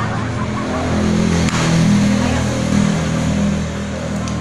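A motor vehicle's engine running, its hum swelling toward the middle and easing off near the end.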